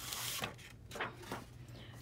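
Sheets of paper sliding and rustling as they are laid on a shoe box, with a short burst of rustle at the start and a few faint taps after.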